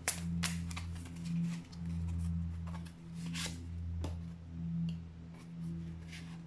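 A deck of oracle cards being shuffled and fanned by hand, with several separate card snaps and clicks, over a steady low drone.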